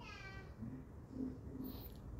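A short high-pitched call that falls in pitch, lasting about half a second at the start, over low background room noise.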